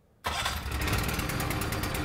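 Lukas hydraulic power unit, the motor-driven pump for a combination spreader-cutter rescue tool, switched on: its motor cuts in abruptly about a quarter second in and runs steadily with a rapid, even pulse.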